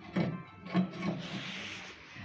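Household objects being shifted by hand: rubbing and rustling with two light knocks, the first just after the start and the second under a second in.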